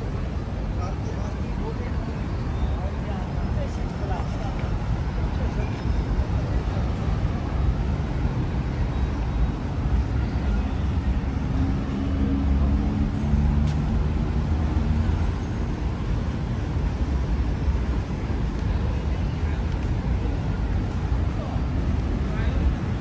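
City street ambience: a steady rumble of road traffic with passers-by talking. A vehicle's engine hum rises and fades about halfway through.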